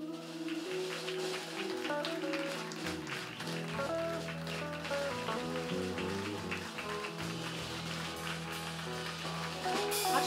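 Live band playing a soft instrumental vamp of sustained chords, with a bass line coming in about three seconds in.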